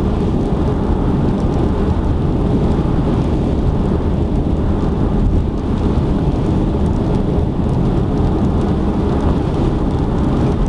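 Steady low rumble of tyre and road noise heard inside a car cabin at expressway speed.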